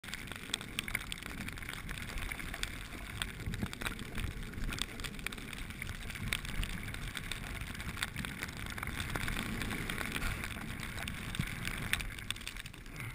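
Edges scraping and chattering over hard, crusty snow on a fast downhill run, with wind buffeting the microphone. A sharp knock comes right near the end as the camera goes down into the snow.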